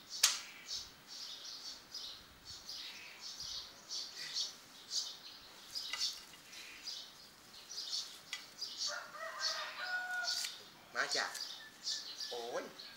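Small birds chirping repeatedly in short high calls, with one sharp click just after the start and a brief voice near the end.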